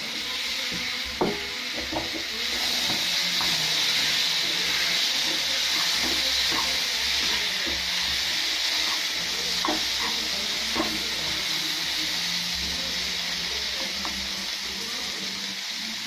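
Chopped tomatoes and onions sizzling steadily in a frying pan as they are stirred, with a few brief scrapes and taps of the spatula against the pan.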